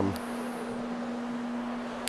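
Rotary carpet-cleaning machine running with a microfibre scrub pad on loop olefin carpet: a steady motor hum over the even swish of the pad.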